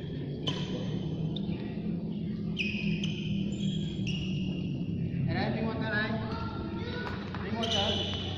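Shoes squeaking on a badminton court floor in a large hall, a handful of short high squeaks, with people talking in the background from about five seconds in.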